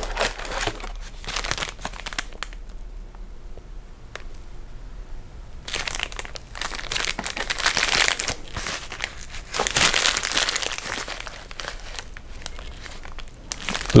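Thin plastic packaging bags crinkling and rustling in irregular bursts as they are handled and pulled from a cardboard box, busiest in the second half.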